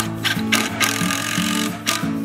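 DeWalt cordless driver running for about a second and a half, driving a screw through a plywood top into the wooden frame beneath, with guitar music underneath.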